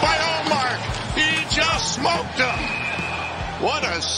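Hockey broadcast audio with voices and background music. A single steady high tone is held for about a second past the middle.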